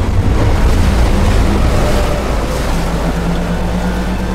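Film sound effect of an alien spaceship surging up out of a river: a rush of spraying water over a deep rumble. It is loudest in the first half, and a low steady hum joins in the second half.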